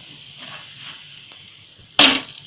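Oil sizzling steadily under a multigrain flatbread frying on a tawa, just after oil has been poured around it. A sudden loud knock comes right at the end.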